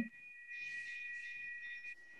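Faint, steady, high-pitched electronic whine of two close pitches held together, cutting off just before the end, over faint background hiss.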